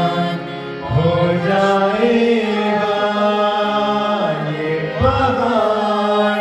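A man singing a devotional worship song, accompanying himself on a harmonium whose reeds hold steady chords under his voice. The music softens briefly just under a second in, and his voice slides up to a higher note about five seconds in.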